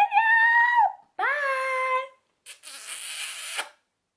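A woman's voice sings out two long, high notes, the second lower than the first, then gives a breathy, hissing shout of about a second.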